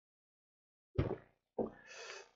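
Silence for about a second, then a man's brief wordless vocal sound and a breath just before he starts speaking again.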